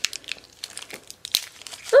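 Small plastic blind bag crinkling as fingers twist and pull at it, the bag resisting being torn open: scattered crackles with one sharper snap about a second and a half in.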